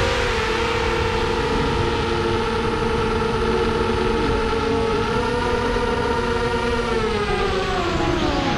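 Brushless motors and propellers of an SRD250 V3 racing quadcopter whining steadily in flight, picked up by its onboard camera. The pitch rises a little about five seconds in and drops near the end as the throttle changes.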